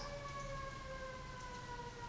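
A faint siren, one long tone slowly falling in pitch.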